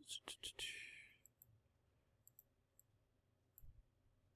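Near silence, broken by a few short clicks and a brief hiss in the first second, then faint scattered ticks.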